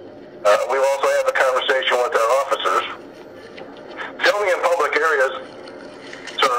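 A man's voice speaking over a phone call, in two stretches with a short pause between, over a low steady line hiss.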